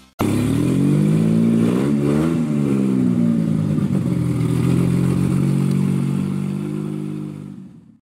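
A car engine revs up and back down about two seconds in, then runs steadily and fades out near the end.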